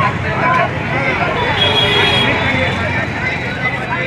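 Busy street-market noise: traffic running by and a babble of voices. A brief high-pitched tone sounds in the middle.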